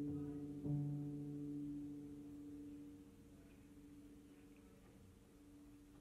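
Upright piano's closing chord: notes struck at the start and again under a second in, then left to ring and fade away slowly over the next few seconds as the song ends.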